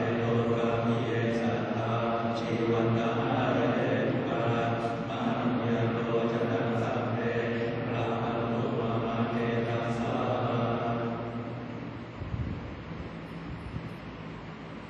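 Thai Buddhist monks chanting in Pali, which stops about 11 seconds in, leaving the steady whir of electric fans and a few faint knocks.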